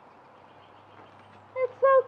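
Faint background with a steady low hum, then near the end a high, sing-song exclamation from a voice.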